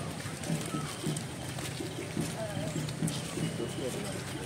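A steady low beat, about two thuds a second, with faint voices mixed in.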